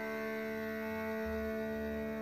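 Film soundtrack music of sustained, steady held tones, like a drone, with no speech.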